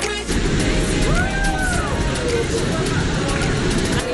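Steady rush of a small waterfall spilling over a rocky cascade. A person's voice calls out over it about a second in, its pitch rising and then falling.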